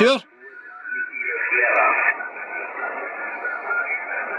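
Yaesu FTdx-10 HF transceiver's speaker on receive, with DNR noise reduction on: thin, narrow band noise with a weak voice station under it. The audio drops sharply just after the start as the contour filter is switched in, then the noise comes back.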